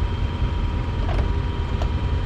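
A steady low rumble with a faint constant hum, and two light clicks a little past one second in as a car's driver door is opened.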